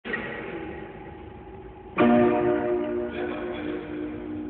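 A keyboard instrument plays a few quiet notes, then a chord struck about two seconds in that is the loudest sound and rings on, slowly fading.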